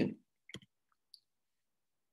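A short click of a computer mouse advancing a presentation slide, followed by a fainter tick about half a second later.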